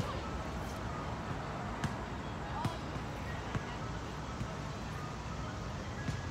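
Steady outdoor city-park background noise, with a few faint sharp clicks about two, three and three and a half seconds in, and faint short chirps.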